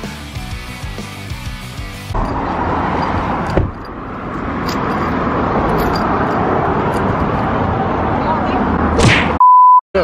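Rock music with electric guitar plays for about two seconds, then cuts to a noisy outdoor stretch with voices. Near the end comes a loud, steady, high beep of about half a second, a censor bleep over a word.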